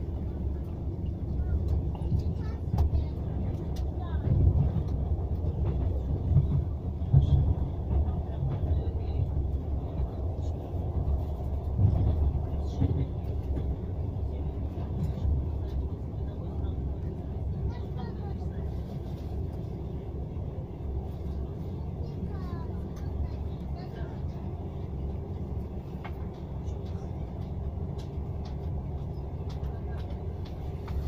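Passenger train running, heard from inside the carriage: a steady low rumble of wheels on the track, with a few louder knocks in the first twelve seconds or so.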